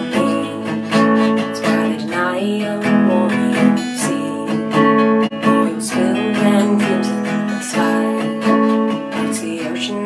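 Acoustic guitar strummed in a steady rhythm, with a young woman singing a slow folk-style melody over it.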